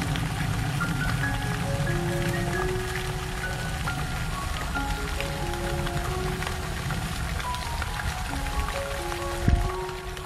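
Background music: a melody of held notes over a steady low rumbling noise, with one sharp thump near the end.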